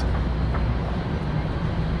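Steady low rumble of city street noise, the hum of traffic and the urban surroundings, with no distinct single event.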